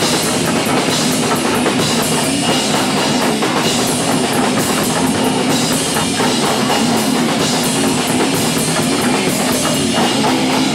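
Live rock band playing loud and without a break: a drum kit pounded with crashing cymbals under electric guitar.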